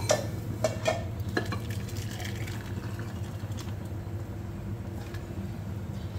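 Pot of moong dal simmering on the stove: a steady low hum, with a few light clinks in the first second and a half.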